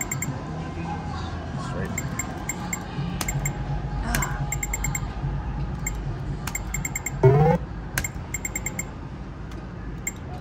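A video poker machine beeping out short runs of quick electronic ticks, several times over, as cards are dealt and drawn, over a steady low casino hum. A little past the middle there is a short, loud rising sound.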